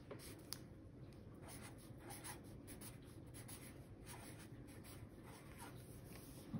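Felt-tip marker writing on a sheet of paper: a run of faint, short scratching strokes as a word and a number are written.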